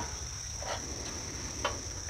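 Steady high-pitched trilling of crickets, with a faint low rumble underneath and a couple of faint clicks.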